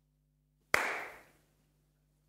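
A single sharp hand slap about three-quarters of a second in, dying away within about half a second.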